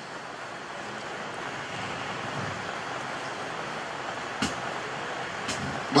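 Steady background noise of the venue during a pause in speech, an even hiss with a faint low hum, and two faint clicks near the end.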